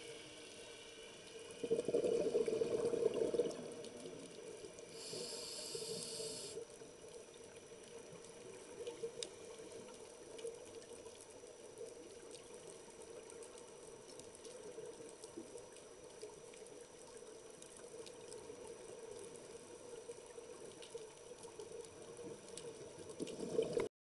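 Underwater recording: a burst of bubbling about two seconds in, a brief high hiss around five seconds, then faint water ambience with scattered small clicks.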